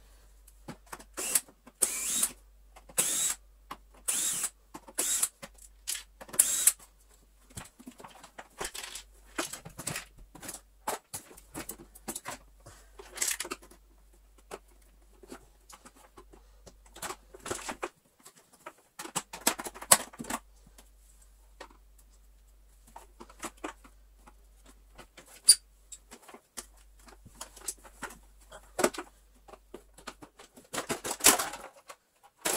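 Irregular clicks, knocks and scrapes of hard plastic parts and hand tools as a Miele canister vacuum's casing is taken apart, with a quick run of sharper clatters in the first few seconds.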